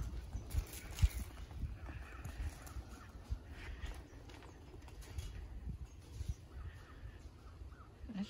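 Wind buffeting the microphone as a low rumble, strongest in the first couple of seconds, with a few faint calls near the middle.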